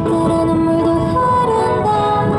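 A woman sings live into a handheld microphone, amplified, holding long notes over instrumental accompaniment.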